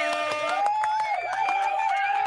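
Drawn-out voice sounds: long held notes that slide a little in pitch, overlapping one another.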